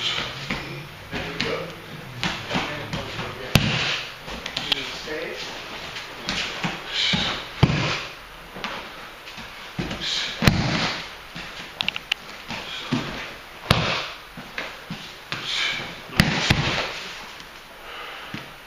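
Aikido breakfalls on a padded tatami mat: a sharp slap about every three seconds as the partner is thrown with kotegaeshi and slaps down, with rustling of cotton uniforms and hakama between the falls.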